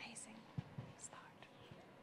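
Faint whispering in a near-silent room, with a soft knock a little past halfway.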